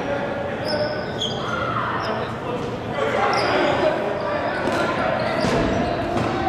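Rubber dodgeballs bouncing and smacking on a hardwood gym floor, with short high sneaker squeaks and players shouting, all echoing in a large gym hall.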